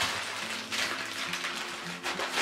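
Background music with sustained notes, over the crinkling rustle of baking paper pressed and smoothed by hand across a block of butter on pastry dough, in short rushes near the start and about a second in.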